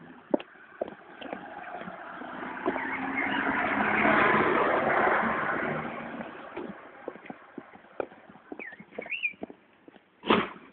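Footsteps clicking on pavement during a walk, with a passing vehicle's noise swelling up and fading away over a few seconds in the middle. Two brief high squeaks come near the end.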